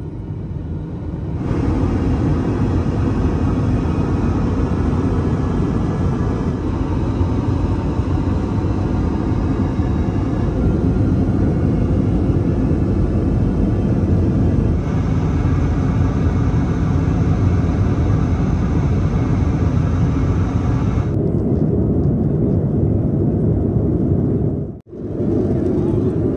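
Steady low drone of an airliner cabin in cruise, an Airbus A330-200's airflow and engine noise. It is even throughout, with a slight change in tone about a second in and again near the end.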